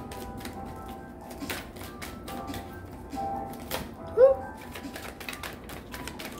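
Tarot cards being shuffled, a run of quick, irregular soft clicks and flicks of card stock, over faint steady background music.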